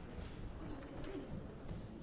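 Faint low murmur of voices with soft movement and shuffling as children come forward in a church sanctuary. There are a few brief low vocal sounds about a second in.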